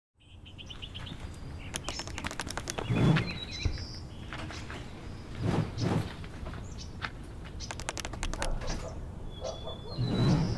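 Small birds chirping and calling in short, scattered bursts over a low background rumble that swells twice, about three and six seconds in.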